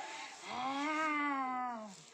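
A person's voice making one long drawn-out call, starting about half a second in, rising a little and falling away at the end.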